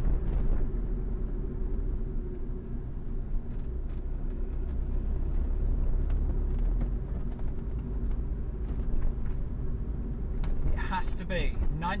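Steady low rumble of a running vehicle, with no break in it. A man's voice comes back in near the end.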